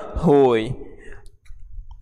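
A man's voice says one drawn-out word, then pauses, with a few faint clicks in the quiet second half.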